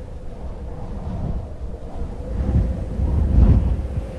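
Film soundtrack of high-altitude wind: a deep rumbling rush that swells and is loudest about three and a half seconds in, with a faint steady tone held above it.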